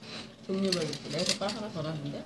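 Speech: a person's voice talking, starting about half a second in.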